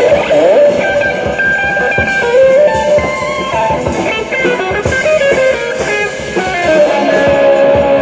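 Live jazz with electric guitar to the fore over drums: a stream of changing notes, some sliding in pitch, over busy cymbal and drum strokes.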